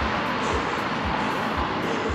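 Wind rushing over a bike-mounted camera's microphone while riding along the road, a steady loud rush. Under it, background music with a low beat about twice a second.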